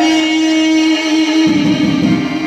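Live music: harmoniums and a plucked string instrument under one long held note, with a hand drum coming in about one and a half seconds in.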